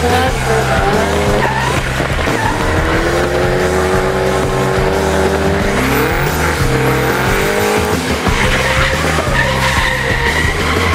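Drift car engines revving hard, rising and falling in pitch with a sharp rev-up about six seconds in, while tyres squeal and skid, over background music with a heavy repeating bass beat.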